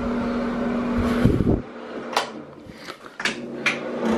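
A steady fan-like hum with a single held tone cuts off abruptly about one and a half seconds in. Then come several sharp clicks and knocks.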